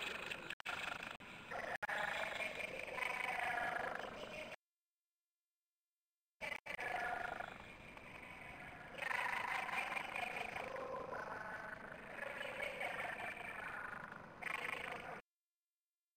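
Faint, garbled voice coming over a video-conference link, the audio cutting out completely twice: about four and a half seconds in, for about two seconds, and again near the end.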